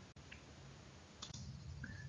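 Near silence: room tone with a few faint clicks, one about a third of a second in and another just past the middle.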